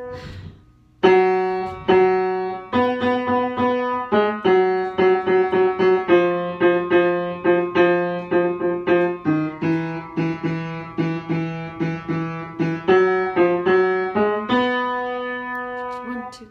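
Piano playing the tenor part of a choral arrangement in chords, struck notes in a steady rhythm, starting about a second in after a short pause.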